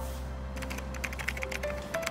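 Keyboard typing sound effect, a quick run of light clicks several per second, over soft background music.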